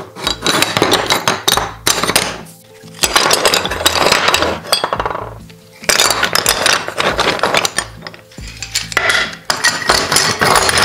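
Marble strips clinking and clattering against each other and the table as they are shuffled and stacked by hand, in about four bursts of rapid stone-on-stone clicks with short pauses between.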